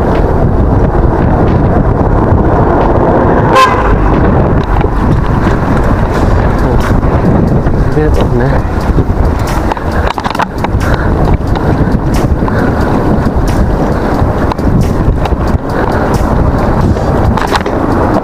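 Riding noise from a mountain bike rolling over paved streets: a steady rush of wind on the handlebar camera's microphone mixed with tyre rumble and frame rattle, with many small knocks from bumps in the surface. A brief high tone sounds about three and a half seconds in.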